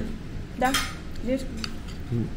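Metal cutlery clinking and scraping against a porcelain plate in a few light, short clinks as a portion of layered salad is taken.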